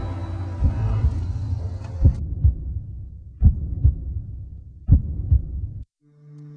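Heartbeat sound effect in a horror soundtrack: low double thumps, lub-dub, about every one and a half seconds, over a low drone. Everything cuts off suddenly just before the end.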